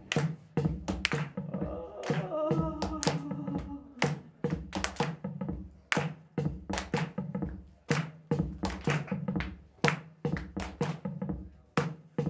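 Instrumental passage of a live electronic song: a programmed beat of sharp percussive hits over a steady low bass tone, with short breaks about every two seconds. A bending, pitched synth line sounds between about two and four seconds in.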